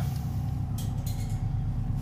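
A steady low hum with a few even tones, like an engine or traffic, with a couple of faint rustles of fabric as a burnt jacket is lifted out of a wire shopping cart, about a second in and again near the end.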